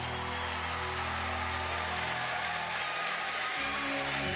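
Studio audience applauding over a sustained music bed. About three and a half seconds in, low string accompaniment begins.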